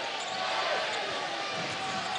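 Arena crowd noise during live play, with a basketball being dribbled on the hardwood court.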